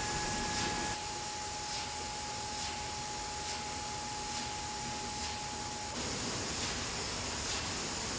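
Detergent bottling-line machinery running: a steady hiss and hum with a steady whine, and faint hissing pulses a little under once a second. The sound shifts about a second in, and again about six seconds in, when the whine drops out.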